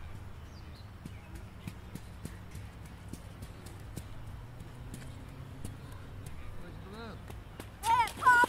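Riverbank ambience: a steady low rumble under a run of light, sharp clicks, about two or three a second, with a brief voice near the end.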